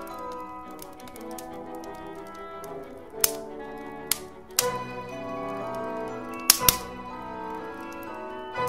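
Christmas music over a crackling wood fire, with about five sharp pops from the burning logs standing out above the music, the loudest about three seconds in and a close pair at about six and a half seconds.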